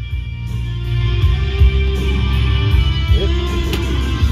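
Music with guitar and heavy bass playing loud from a 2010 Toyota RAV4's car stereo, heard inside the cabin, starting just as the stereo is switched on.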